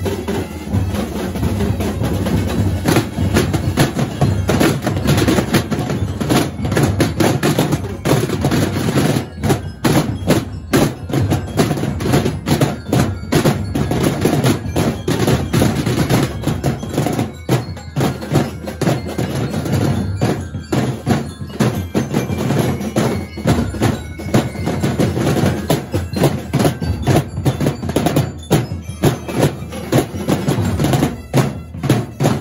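Percussion band playing a continuous fast groove on massed snare drums and tom-like drums struck with sticks and mallets, many strokes a second with rolls.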